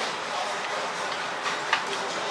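Steady chatter and din of a busy restaurant dining room, with two light clinks of utensils on tableware near the end.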